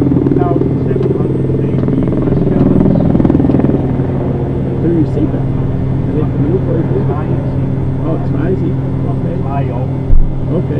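Steady low machine hum with indistinct voices over it, louder in the first few seconds.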